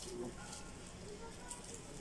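Faint, indistinct voices in the background over low room noise.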